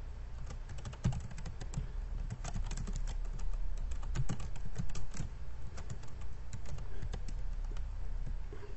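Computer keyboard being typed on in quick, irregular runs of key clicks, over a steady low hum.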